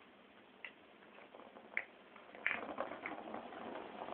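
Plastic balls clicking and rattling in a plastic ball-track cat toy as a kitten bats at them: a few separate sharp clicks, then a quicker run of knocks and rolling rattle from about halfway through.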